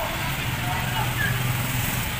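Street traffic: vehicle engines running with a steady low hum, mixed with scattered voices of people nearby.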